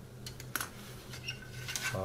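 Several light clicks and taps of plastic model-kit sprues being handled, the sharpest about half a second in, over a faint steady hum.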